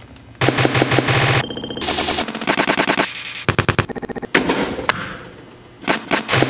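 Ceramics studio sounds edited into a beatbox-style rhythm: rapid rattling runs of clicks and taps in several short segments that switch abruptly, some carrying a buzzy pitched tone. The sound dies away near the end.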